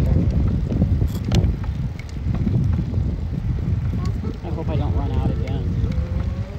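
Wind buffeting the microphone while riding an electric bicycle along a street: a constant, uneven low rumble, with a brief voice murmur near the end.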